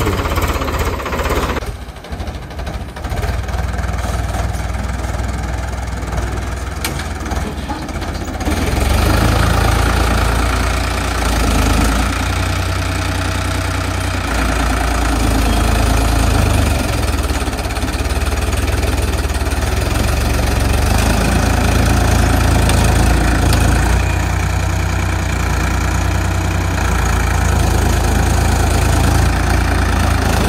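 Ford tractor's diesel engine running steadily while it works a rear blade, pushing soil into a pit. It is quieter for a few seconds near the start and louder from about nine seconds in.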